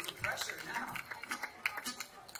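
Voices of people chatting in an outdoor concert audience between songs, with a few short clicks mixed in.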